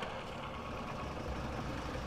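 A van's engine running steadily at low revs, a low, even rumble with no revving.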